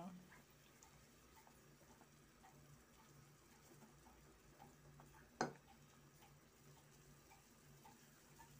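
Near silence: a pot of chicken soup simmering, giving faint scattered ticks and small pops over a low hum, with one sharp click a little past halfway.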